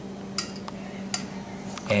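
A metal slotted spoon clinking about three times against the pot while scooping a poached egg out of the water, over a steady low hum.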